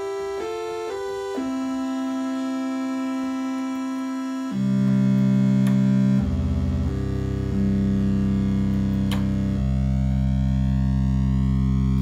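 Moog Grandmother analog synthesizer played through a MidiVolts Desktop in Poly3 mode: a few quick short notes, one held note, then from about four and a half seconds louder, lower held notes that change three times. The lowest notes fall below the MidiVolts' range, so only one of its voices sounds.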